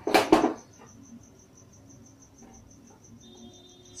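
A brief, loud rush of noise right at the start as the gas stove burner catches, then a cricket chirping steadily, about five high chirps a second.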